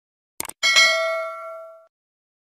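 Sound effect of a subscribe-button animation: two quick mouse clicks, then a bell-like notification ding that rings out and fades over about a second.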